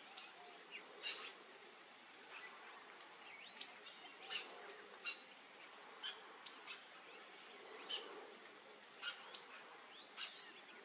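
Short, sharp bird chirps, about ten of them, spaced irregularly roughly once a second, over a faint steady background hiss.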